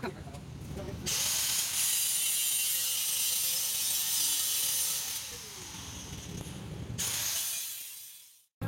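Power grinder on the steel exhaust pipe, throwing sparks: a loud, hissing grind that starts about a second in and runs for about four seconds, eases off, then comes back briefly near the end before dying away.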